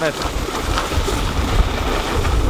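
Wind buffeting the microphone of a handheld camera: a steady low rumble and rush with gusty swells.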